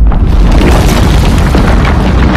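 A loud, deep earthquake rumble with dense crashing and rattling of objects on top of it.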